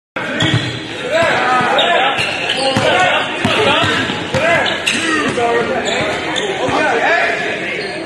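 Basketball bouncing and sneakers squeaking on a hardwood court in an echoing gym. There are many short squeals and scattered knocks, with players' voices in among them.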